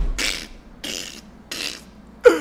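A man's breathy, voiceless laughter: three wheezy exhalations about two-thirds of a second apart, with a low thump as it starts.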